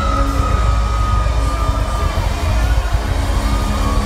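Rock band playing live through a loud PA, with a long held high note over the first two seconds and another near the end, and the crowd cheering under the music.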